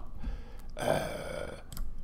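A man's brief throaty noise in place of words, lasting about a second, in the middle of a pause.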